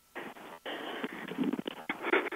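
Faint, muffled voices coming through a telephone line, thin and broken up.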